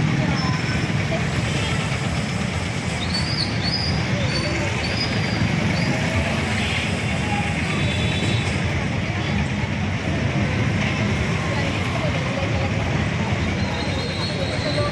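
Steady street noise of traffic, with the scattered voices of a crowd walking along the road.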